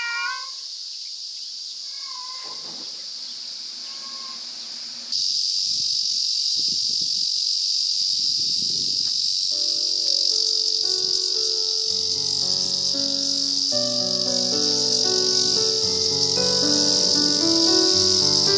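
A tabby cat meows once at the start, with a fainter call a couple of seconds later, over a steady high-pitched insect drone that gets louder about five seconds in. From about halfway, background music with held keyboard notes plays over the insects.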